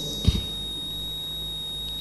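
Steady electrical hum and hiss with a thin, high-pitched whine, and one brief low thump about a third of a second in.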